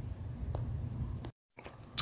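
Faint low background rumble with a couple of soft clicks, broken by a brief moment of dead silence at an edit, then a sharp click as the next shot begins.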